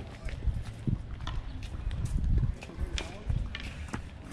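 Sharp knocks of a tennis ball being struck and bouncing on a hard court, over an uneven low rumble of wind buffeting the microphone, with voices in the background.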